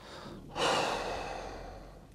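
A person sighing: a soft breath in, then a long breathy exhale that starts suddenly about half a second in and fades away over more than a second.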